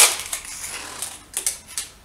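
Adhesive tape being pulled off the roll in short, rasping bursts: one loud pull at the start, then several shorter ones in quick succession.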